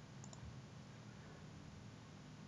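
Near silence with a faint steady low hum, broken by a faint double click about a quarter second in: a computer mouse click.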